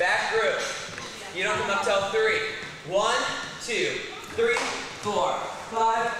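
A person's voice, its pitch gliding up and down in phrases of about a second each.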